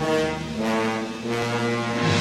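Title music of low, brassy held chords, the notes changing in steps about every half second.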